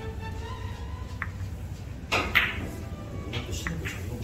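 Carom billiard balls clicking sharply during a close series shot, a few clicks with the loudest pair about two seconds in, over soft background music.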